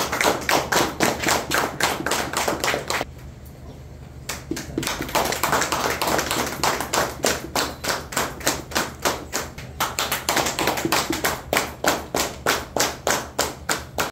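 A small group clapping hands in a steady rhythm, about three to four claps a second, stopping for about a second some three seconds in and then starting again.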